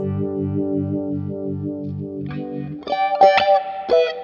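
Clean electric guitar (Fender Telecaster) played through a Black Cat Vibe, a Uni-Vibe-style analog modulation pedal: a held chord throbs evenly about four times a second, then single notes are picked a little past halfway.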